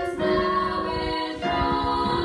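Three female voices singing together in harmony, holding notes, with a new phrase starting about one and a half seconds in.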